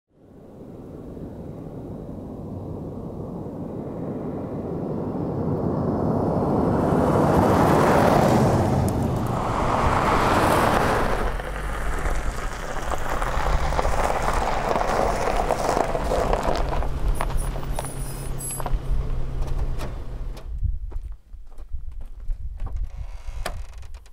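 Car driving on a dirt road, its tyre and engine noise swelling for the first several seconds and then easing as it slows. The engine then idles with a steady low hum, which stops about 20 seconds in, followed by scattered clicks and rustling.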